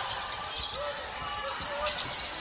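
Basketball being dribbled on a hardwood court, a series of bounces over the arena's background noise.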